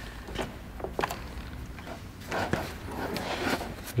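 Light clicks and knocks of a detached plastic car door panel and its cables being handled, a few spread through with a small cluster about two and a half seconds in.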